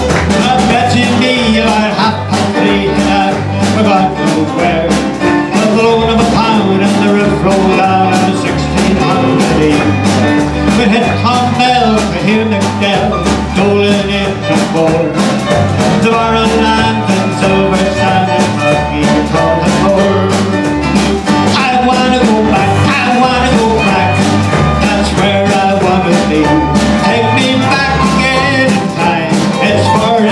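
Live band playing an upbeat showband-style song with a steady beat: electric bass, drum kit, fiddle, keyboard and acoustic guitar.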